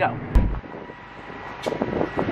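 A sudden thump about a third of a second in, then a steady mechanical hum with a faint high whine and some wind noise.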